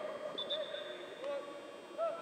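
Faint, distant voices of football players and coaches calling out during a practice, with several voices overlapping.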